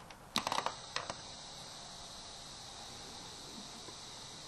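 A quick run of sharp clicks, then two more clicks about half a second later, followed by a steady faint high-pitched whine over hiss.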